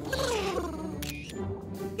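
Cartoon background music with a falling, gliding tone, then a camera shutter click about a second in as the photo is taken.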